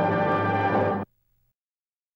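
Held orchestral chord of the film trailer's closing music, cutting off abruptly about halfway through, followed by dead silence.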